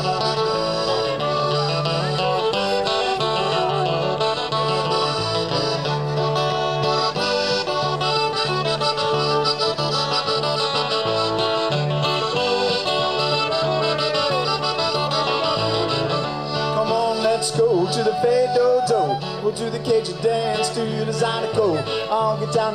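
Live Cajun/zydeco band playing an instrumental break, with the piano accordion prominent over fiddle, electric bass and acoustic guitar. A steady bass line runs underneath, and it gets a little louder with sliding notes in the last few seconds.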